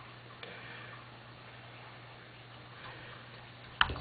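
Quiet room tone with a steady low hum, a few faint light ticks, and one sharp click near the end as the hand-painted glass pitcher is handled on the table.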